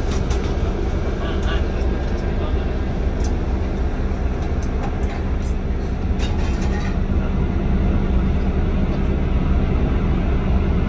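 A vehicle engine running with a steady low drone, heard from inside a bus cabin.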